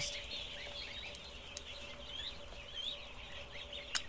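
Ducklings peeping faintly, many short chirps overlapping, over a faint steady hum. A sharp click comes just before the end.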